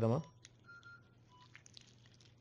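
Medical patient monitor beeping softly: short electronic beeps about a second apart, one a little higher and longer, over a low steady hum.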